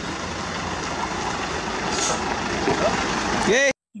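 Diesel engine of a Hino 500 concrete mixer truck running steadily, growing slightly louder, and cutting off abruptly near the end.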